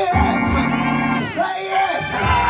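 A woman's voice singing or shouting loudly through a microphone over live backing music, in gospel-preaching style, her voice gliding down in pitch about a second in.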